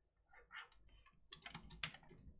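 A few faint, irregular computer keyboard keystrokes, the kind of shortcut presses used while painting in Photoshop.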